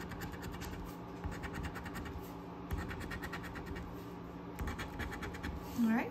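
A coin scraping the coating off a scratch-off lottery ticket in quick back-and-forth strokes. The strokes come in a few runs with short pauses between them, and there are a few dull knocks against the table.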